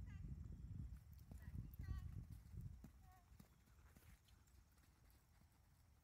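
Faint hoofbeats of a pony cantering on arena sand, under a low rumble that is loudest in the first half and fades about halfway through.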